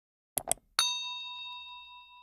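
Two quick clicks, then a bright bell ding that rings on and slowly fades. It is an end-screen sound effect: the notification bell icon being clicked and ringing.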